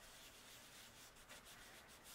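Faint, steady rubbing of a blending brush swirling ink onto cardstock.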